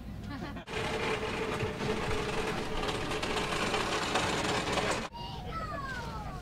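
A small motor running steadily with a constant hum for about four seconds. It starts abruptly about a second in and cuts off abruptly near the end.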